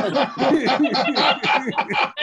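Several people laughing at once, their chuckles and laughs overlapping, with a little talk mixed in.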